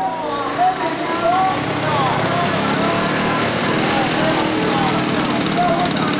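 Busy street ambience: overlapping chatter and calls from a crowd over a steady mechanical drone, like a small engine running.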